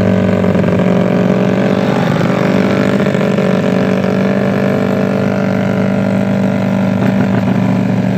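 Bored-up Yamaha Mio scooter's single-cylinder engine, taken out to 150cc, running loud at high, nearly steady revs through an aftermarket racing exhaust while being ridden, the pitch dipping briefly about two seconds in.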